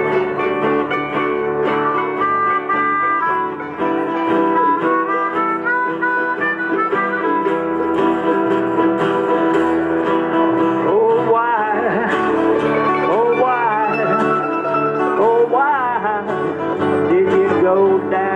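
Harmonica (blues harp) playing a solo line over a country band's strummed acoustic guitar and mandolin, the notes bending and wavering in the second half.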